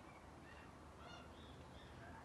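Near silence, with a few faint, short bird chirps in the background.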